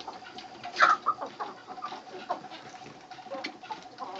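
A flock of young Silkie chickens calling while they feed: scattered short peeps and soft clucks, the most prominent about a second in.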